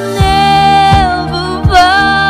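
A woman singing a slow ballad into a handheld microphone, holding long notes that dip and rise, over a backing track with a steady bass and a drum beat about every three-quarters of a second.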